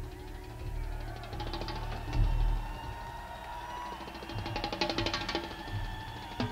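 Live drum-and-percussion improvisation: rapid clicking, wood-block-like strokes and low drum booms over sliding, wavering tones. The loudest moment is a deep boom about two seconds in, and a flurry of fast clicks comes near five seconds.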